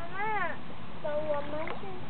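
A cat meowing twice: a short call that rises and falls right at the start, then a longer one about a second in that holds its pitch and drops away at the end.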